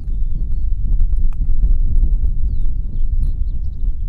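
Low, uneven rumble of outdoor background noise, with a few faint, high, short chirps in the middle and scattered light clicks.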